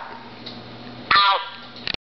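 A short, falling voice sound from the cordless phone's speaker, the caller on the line answering the request to sign off, over a steady low hum. A few quick clicks come just before the end.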